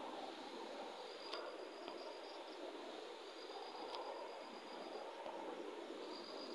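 Low background hiss with a faint, high, steady whine that fades in and out a few times, and a few soft clicks.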